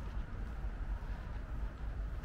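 Steady outdoor background noise while walking along a park road: a low, unsteady rumble under a soft, even hiss, with no distinct single sound standing out.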